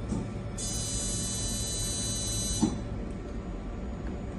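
A high electronic tone from the laser system sounds for about two seconds and cuts off suddenly, over a steady equipment hum. A single soft thump comes just before the tone stops.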